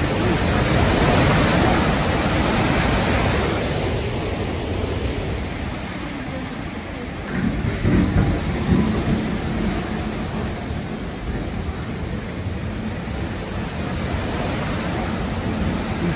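Derecho windstorm: straight-line winds and heavy wind-driven rain make a loud, steady roar and hiss, heard from inside the house. It is hissiest in the first few seconds, with a rougher low rumble from about halfway.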